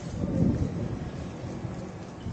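A low rumble on the handheld camera's microphone, swelling to its loudest about half a second in and then easing off.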